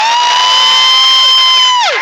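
A long, high-pitched whoop from someone in the crowd, held steady for nearly two seconds, then sliding down in pitch near the end, over faint crowd noise.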